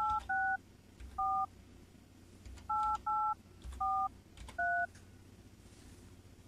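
Telephone touch-tone keypad tones: seven short two-note beeps at uneven intervals as a number is dialed on a phone line, stopping after about five seconds.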